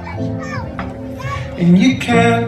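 Children's voices calling out briefly over a thinned-out stretch of the backing music, with one held note underneath.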